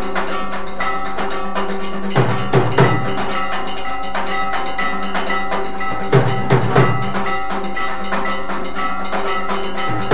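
Temple aarti music: metal bells clanging rapidly with a steady ring, and a drum beaten in groups of three strokes about every four seconds.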